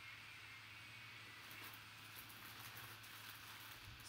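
Near silence: a low steady room hum, with faint crinkling from the clear plastic bag around a jersey as it is turned over, from about a second and a half in.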